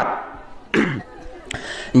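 A man's single short cough about two thirds of a second in, followed by a sharp click a little later.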